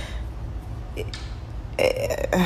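A pause in a woman's talk, filled with a low steady hum and soft breathing, then a short vocal sound from her near the end.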